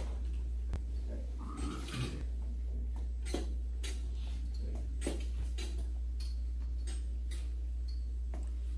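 Slow, uneven clicks and taps from steps on an above-knee prosthetic leg, its knee joint and foot, over a steady low electrical hum. The leg is being walked on for the first time after fitting.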